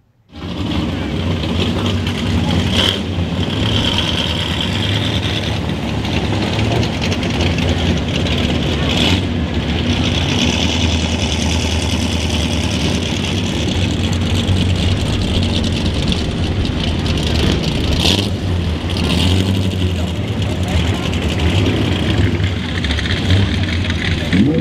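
A car engine idling steadily close by, a low even hum, with people talking around it.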